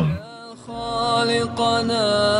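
A solo voice chanting a long, held melodic line, coming in about half a second in and wavering gently in pitch.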